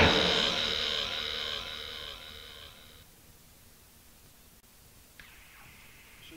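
The final chord of a gothic/death metal song fading away over about three seconds. It gives way to near silence with a faint hiss and a small click about five seconds in.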